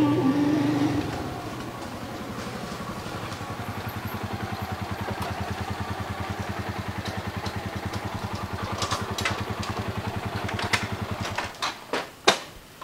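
A small motorcycle engine running with an even pulse as it rides up and stops, then cutting out shortly before the end. A few sharp clicks follow in the last seconds.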